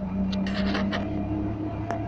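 Wartburg 311's three-cylinder two-stroke engine running while the car drives, heard from inside the cabin, its tone shifting about halfway through. Several sharp clicks come in the first second and one near the end.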